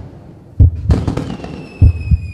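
Channel outro logo sting: deep thumps in pairs, like a heartbeat, once about half a second in and again near the end, with a high ringing shimmer entering past the middle and slowly falling in pitch.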